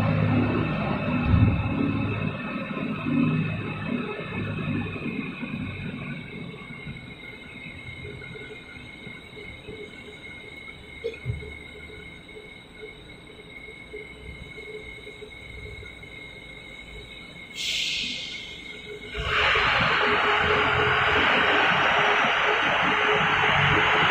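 Steady hum and high whine of steel-mill plant machinery, with a low rumble that fades over the first few seconds. Near the end a loud, even rushing hiss starts suddenly.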